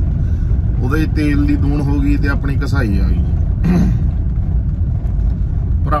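Steady low rumble of a car heard from inside the cabin while it is driven, with a man's voice speaking over it for much of the time.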